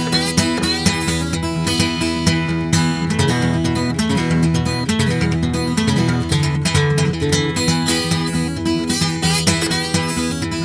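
Acoustic guitar playing an instrumental blues break between sung verses, with a steady run of picked notes over ringing bass notes.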